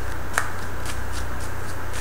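A deck of tarot cards being shuffled by hand: a run of soft papery ticks, about three or four a second, with one sharper click about half a second in, over a steady low hum.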